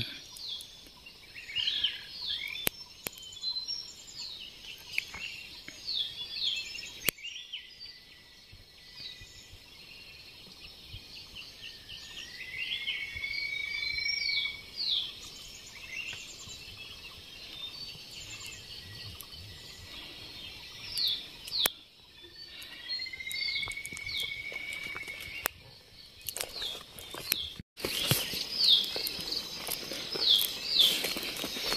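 Forest birds calling: many short, high, downward-sliding chirps repeated throughout, and twice a longer whistled note that rises and then holds, with a faint steady high drone underneath. A cluster of clicks and knocks comes near the end.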